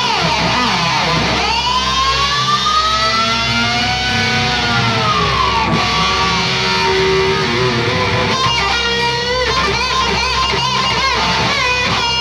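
Distorted electric guitar solo over a heavy metal band playing live. A long note is bent up and held with vibrato for several seconds, then drops away, and quick wavering notes follow later. Bass and drums run steadily underneath.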